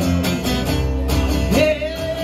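Live acoustic guitars strumming over a low bass line. About one and a half seconds in, a singer's voice slides up into a long held note with a slight waver.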